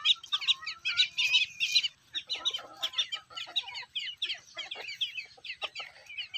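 Chicks peeping in many short, falling chirps, with hens clucking at a lower pitch in the middle stretch.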